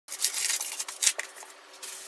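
Clear plastic packaging crinkling and rustling as it is handled, an irregular run of sharp crackles, loudest near the start and about a second in.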